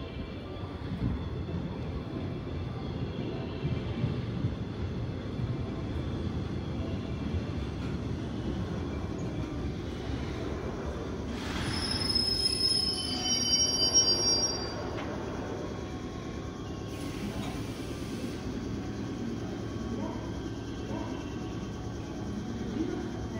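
JR West 105 series electric multiple unit running into the platform and braking to a stop, its wheels and running gear rumbling steadily. About twelve seconds in, high whistling brake squeal rings out for a few seconds as it halts, the loudest part, followed about five seconds later by a short hiss.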